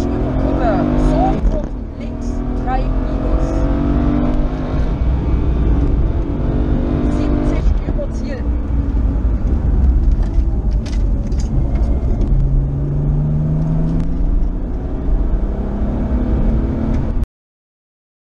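Onboard sound of a BMW rally car at stage speed, heard inside the cabin: the engine revs climb in pitch through the gears and drop between shifts and braking, over heavy road and tyre noise. The sound cuts off abruptly near the end.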